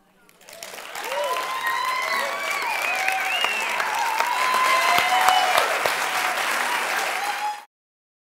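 An audience applauding, with voices calling out over the clapping. The applause builds over the first second and cuts off suddenly near the end.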